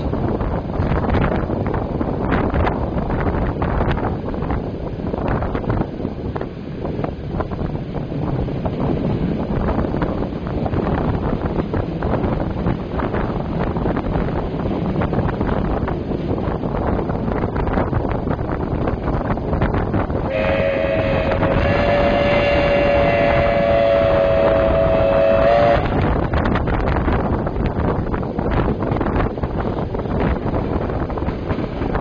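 Train running along the line, heard from an open window with wind buffeting the microphone. About twenty seconds in, a train horn sounds two notes at once, held for about five seconds.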